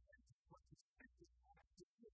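Near silence: a faint low hum that keeps cutting in and out, with scattered faint, broken blips of sound.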